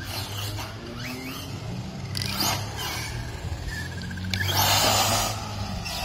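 Electric RC monster truck's motor and drivetrain whining as it is driven, the pitch rising and falling with the throttle. A louder rushing noise lasts about a second, starting about four and a half seconds in.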